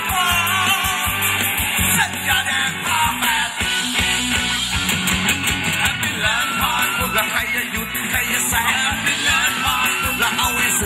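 Live band playing upbeat Thai ramwong dance music, a singer's voice over a steady drum beat.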